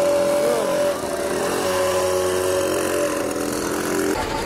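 Pocket bikes' small engines running with a steady, high-pitched engine note that shifts in pitch a couple of times.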